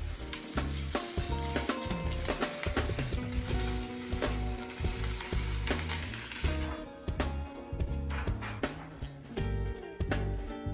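DTF transfer film crackling as it is peeled slowly off a t-shirt once the print has cooled, the crackle dying away about two-thirds of the way through. Background music with a repeating bass line plays throughout.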